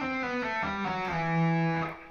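Electric guitar played legato and slowly, stepping down a few notes in a slide to the root E, which rings out through most of the second half and is then cut off.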